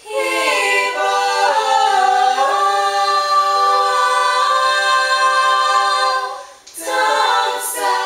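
Voices singing a cappella in harmony: held chords whose notes slide to new pitches, with a short break about six and a half seconds in before the singing starts again.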